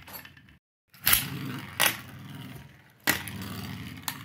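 Metal Beyblade spinning tops clacking down onto a plastic tray, about a second in and again at about three seconds, each clack followed by a steady whirring rasp as the tops spin on the plastic.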